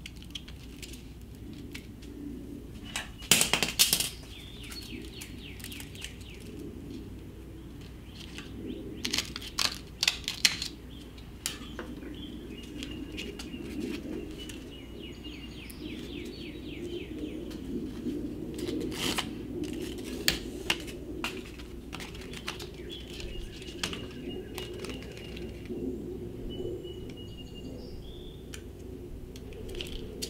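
Non-slip grip tape being peeled off its roll and its backing paper pulled away: bursts of sharp crackling, loudest about three seconds in and again around nine to ten seconds, with scattered single crackles after.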